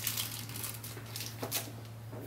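Clear plastic wrapping bag crinkling as it is handled, in short irregular rustles that die away after about a second and a half, over a steady low hum.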